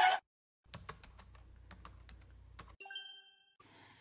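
A quick, irregular run of key clicks like typing lasts about two seconds. It is followed by a single bell-like ding that rings briefly and fades.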